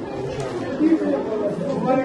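Indistinct talking of several people in a room, with voices overlapping.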